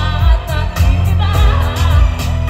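A woman singing a pop song live into a microphone, her voice wavering with vibrato, over a band's bass and drums with a steady beat, heard through the concert's PA speakers.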